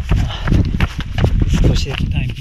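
A trail runner's footfalls, a rhythmic run of steps, with his voice over them.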